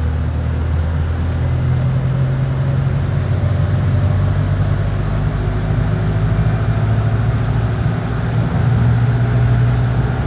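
Engine drone and road noise of a double-decker bus heard from inside the passenger saloon, steady, with the engine note stepping up in pitch about a second in and again near the end.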